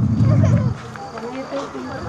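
People talking over one another, with a short low rumble right at the start.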